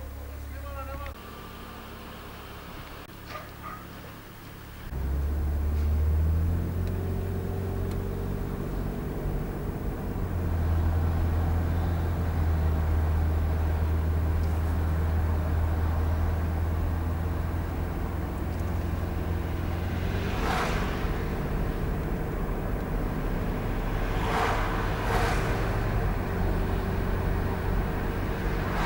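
A car's engine running with a steady low hum, growing clearly louder about five seconds in and then holding steady.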